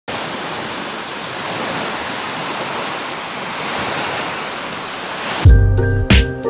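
Small ocean waves washing up on a sandy shore, a steady rushing hiss of surf. About five and a half seconds in, music with heavy bass cuts in abruptly and is louder than the surf.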